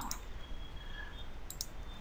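Computer mouse clicking: a faint click near the start, then a few quick clicks close together about one and a half seconds in.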